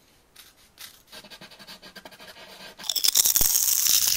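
Colored pencil being turned in a small handheld sharpener, a faint fine scraping as the blade shaves the wood. About three seconds in, a much louder crisp crackling takes over.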